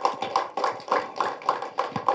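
A few people clapping their hands in a steady rhythm, about six claps a second.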